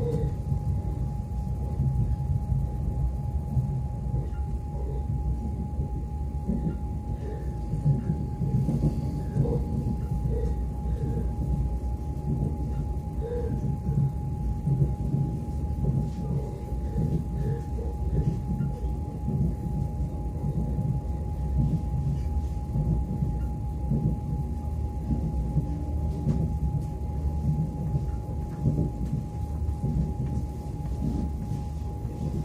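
Interior running noise of an MCC Lastochka (Siemens Desiro ES2G) electric train at speed: a steady low rumble of wheels on rail with a constant thin whine.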